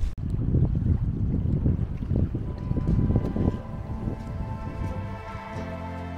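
Wind noise on the microphone, an uneven low rumble, for the first three seconds or so. Then soft background music with long held notes fades in and takes over.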